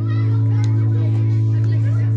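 Children's voices calling out over a loud, steady low drone from the band's sound system as the song ends.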